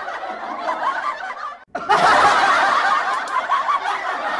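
Human laughter, snickering and chuckling. It breaks off briefly to near silence a little under two seconds in, then comes back louder.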